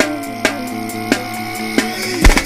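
Music in a short break: held notes over a steady low bass tone, cut by about four sharp percussive hits, with the heavy kick-drum beat dropped out until just after the break.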